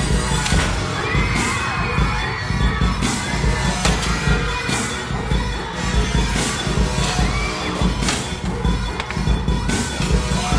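Hip-hop track with a heavy bass beat and sharp percussion playing at a live stage performance, with an audience screaming and cheering over it.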